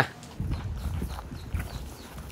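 Footsteps walking over sandy ground strewn with dry leaves, over a steady low rumble.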